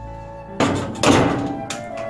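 A door slammed shut as a radio-drama sound effect: a heavy thunk about half a second in that builds to a second, louder hit and dies away, then a short knock near the end. Sustained dramatic background music plays under it.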